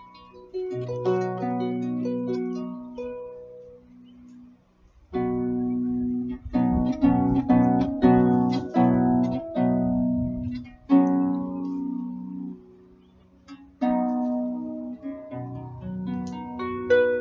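Concert harp played solo: plucked notes and rolled chords that ring and fade. It thins almost to a pause about four seconds in, then comes back with fuller, louder chords.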